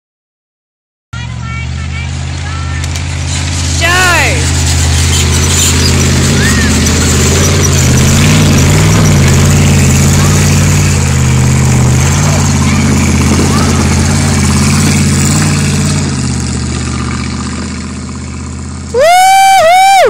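The 351 V8 engine of a Jeep CJ7 works hard under load as the Jeep climbs a steep dirt hill. The engine starts about a second in, gets louder around four seconds, and fades from about sixteen seconds as the Jeep pulls away. A high shout comes around four seconds, and a very loud whoop a second before the end.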